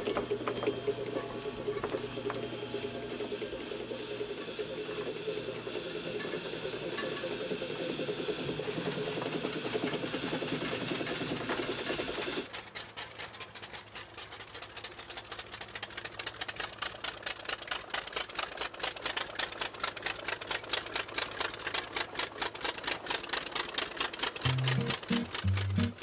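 Old crawler bulldozer's engine running with a fast, even firing beat, growing louder towards the end as the dozer works through snow. Before it, a loud steady mechanical running sound cuts off abruptly about halfway through.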